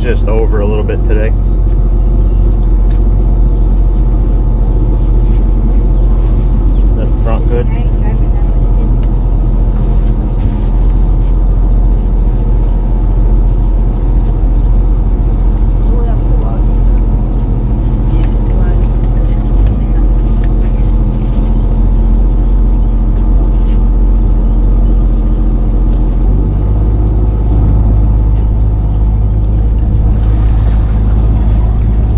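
Sea-Doo Switch jet-drive pontoon boat's three-cylinder Rotax engine running steadily at low speed, with its note changing a few seconds before the end as it picks up.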